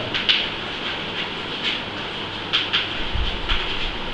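Chalk writing on a blackboard: a few sharp taps and scratches of the chalk as a word is written, over a steady background hiss.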